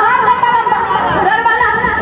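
A woman singing into a microphone through a stage PA, holding long high notes that waver in pitch.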